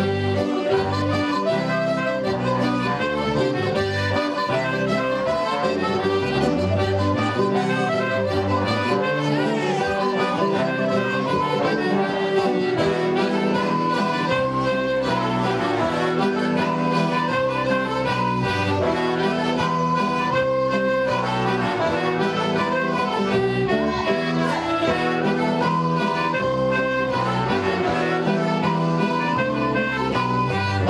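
Live ceilidh band playing a folk dance tune led by button accordion, with fiddle, electric guitar and trombone over a steady bass beat.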